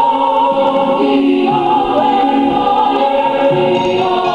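A large group of voices singing together in chorus, a Samoan viʻi (song of praise), with long held notes that move smoothly from one pitch to the next.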